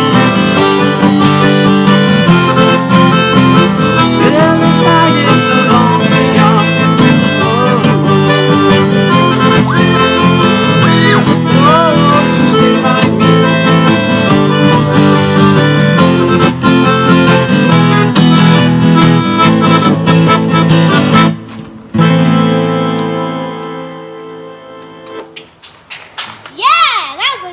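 Piano accordion and acoustic guitar playing an instrumental passage together. The music breaks off about 21 seconds in, then a last chord is held and fades away over the final few seconds.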